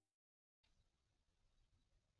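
Near silence: the outro music has faded out, leaving only a faint hiss.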